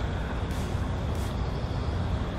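Steady low rumbling background noise with a faint, steady high-pitched tone and a couple of brief hisses.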